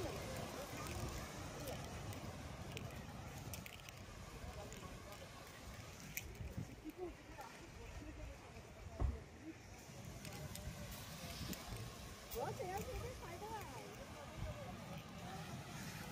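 Faint distant voices over a low outdoor rumble, with a single knock about nine seconds in.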